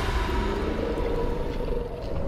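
Movie trailer sound design: a deep, steady rumble under long, held eerie tones at two pitches, an ominous drone.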